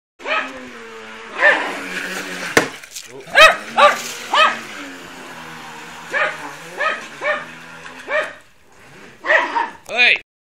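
A dog barking about ten times in short barks spread through the clip, over a steady low hum from the RC boat's brushless motor running on the pool, which fades away about eight seconds in.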